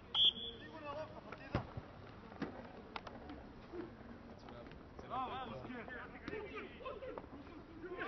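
A referee's whistle blows once, short and shrill, then about a second and a half later a rugby ball is kicked off the ground with a sharp thump, followed by players shouting.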